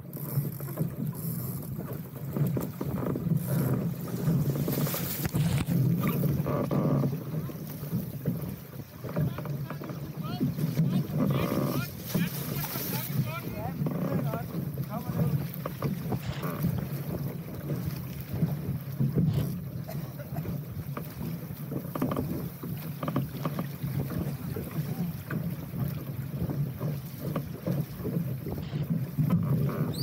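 Water rushing and splashing along the hull of a small sailing dinghy moving through choppy water, in uneven surges, with wind buffeting the microphone.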